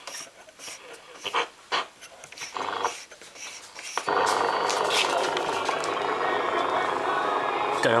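AM radio of a Toshiba SM-200 music centre being tuned across the medium-wave band: short bursts of static and fragments of stations, then about four seconds in a distant station locks in and plays steadily.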